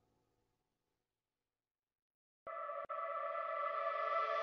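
Background music stops, leaving silence; about two and a half seconds in, a new electronic track starts abruptly with sustained synth tones that grow steadily louder.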